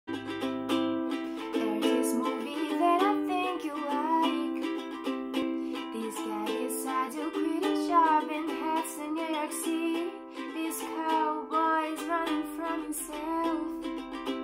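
Ukulele strummed in a steady rhythm, with a woman singing along from a few seconds in.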